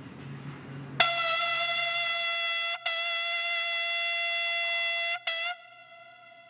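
A military bugle call on one steady held note, starting suddenly about a second in. It breaks off briefly twice, the last piece short, then rings on and fades in the echo.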